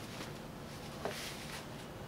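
Faint rustle of Ankara print fabric being handled and folded by hand, with one small tap about a second in.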